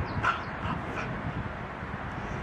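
A dog giving three short, high yips in quick succession.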